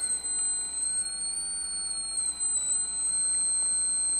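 Transformer coils driven by a TL494 oscillator, squealing with a steady high-pitched whine as the drive frequency sits at the resonant coil's peak. The pitch rises slightly and falls back as the oscillator is tuned.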